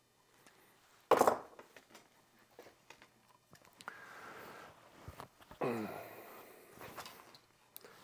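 Handling noises of a compound bow and hand tools at a workbench: a sharp knock about a second in, then quiet scattered clicks and scrapes, with a short breathy sound about six seconds in.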